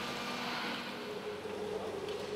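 Steady hum of machinery in a waste sorting plant, with a faint steady tone running through it.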